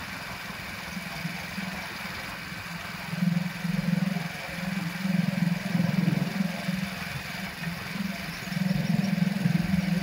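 Engine of the vehicle carrying the camera along a road: a steady low hum that swells louder several times and eases back between.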